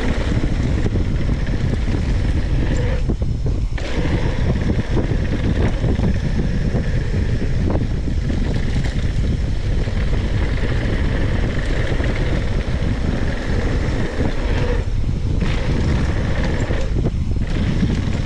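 Steady wind noise buffeting the microphone of a mountain bike's onboard camera as the bike rolls fast down a dirt trail, with the knobby tyres rumbling over the dirt underneath.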